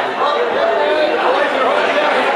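Crowd chatter: many voices talking over one another in a busy club.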